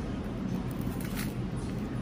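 Steady low rumble of restaurant room noise, with a brief faint click about a second in.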